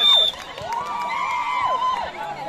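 Netball supporters cheering and shouting together, several voices holding long drawn-out calls, after a brief high-pitched note at the very start.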